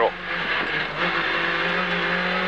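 Renault Clio S1600 rally car's 1.6-litre four-cylinder engine, heard from inside the cabin. It dips briefly at first, then pulls steadily with slowly rising revs as it drives out of a hairpin.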